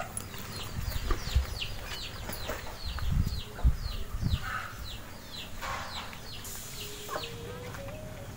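A bird chirping over and over in short falling notes, about three a second, with low thuds and rustling of people getting up and moving about.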